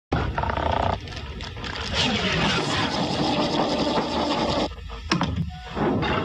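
Sci-fi sliding-door sound effects as a series of hatches open in turn: a long whooshing, rushing noise, then two sharp clicks near the end.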